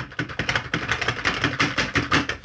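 Rapid, irregular plastic clicking and tapping as a Little People parade toy train is pressed and worked with a small metal tool; none of the toy's own sounds play, which suggests dead or misfitted batteries.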